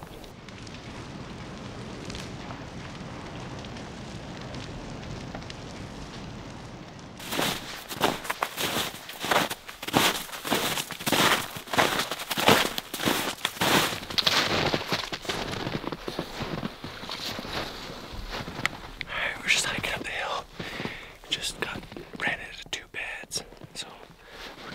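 Boots crunching through snow in steady walking steps, about two a second, beginning several seconds in after a stretch of steady, even hiss.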